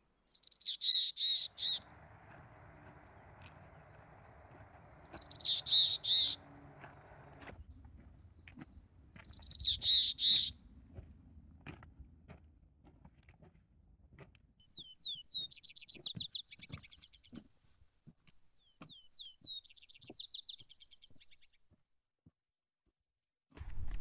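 Birds calling: three loud call series, each about a second long and about four seconds apart, then two quieter runs of rapid chattering notes in the second half.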